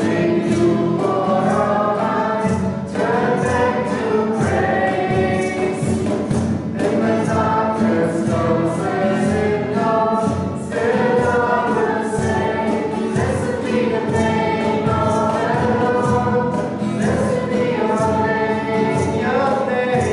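A worship song sung by several voices together, accompanied by strummed acoustic guitar and a cajon keeping a steady beat.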